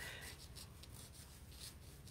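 Faint scratching of a fine-tip ink pen on textured watercolor paper, a string of short, quick strokes as it inks curly hair.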